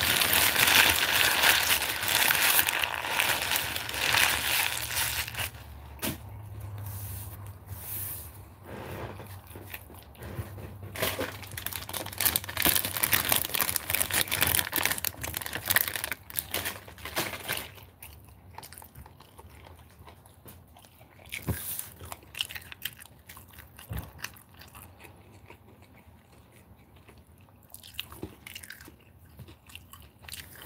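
A plastic bag crinkling close to the microphone for about the first five seconds, then chewing and small mouth sounds of someone eating a sandwich, with scattered clicks and short rustles.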